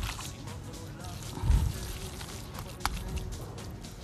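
Wet squishing of minced turkey mixture being kneaded by a gloved hand in a glass bowl, in many small irregular squelches, with a low thump about a second and a half in and faint background music.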